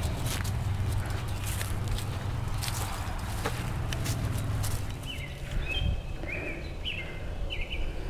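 Footsteps and rustling as people walk outdoors, over a low steady rumble. From about five seconds in, a bird chirps repeatedly in short notes.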